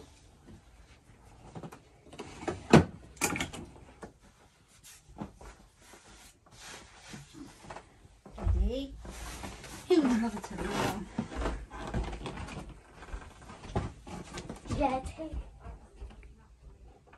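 Handling noises from a bedside crib: a sharp click about three seconds in, the loudest sound, then smaller knocks and rustling of its bedding. Brief bits of voice come in the second half, including a spoken "right".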